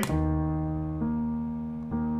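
Sampled keyboard loop played back slowed to half speed by FL Studio's Gross Beat: sustained, slowly fading electric-piano-like chords, with a new note coming in about a second in and another near the end.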